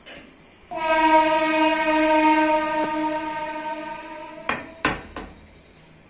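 A loud, steady pitched tone, held on one note for nearly four seconds, then three sharp clicks.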